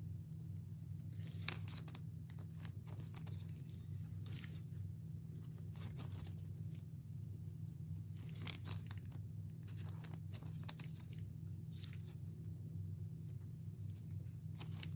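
Plastic card sleeves and toploaders being handled, giving off irregular crinkles and crackles. A steady low hum runs underneath.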